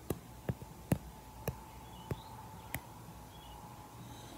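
Five light, sharp taps at irregular spacing, the loudest about a second in: a makeup applicator patting against the camera as powder is pressed onto the viewer's face.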